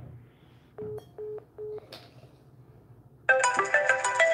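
Three short electronic beeps of one pitch about a second in, the tones of a phone call being disconnected. Then a loud melodic phone ringtone starts near the end, signalling an incoming call.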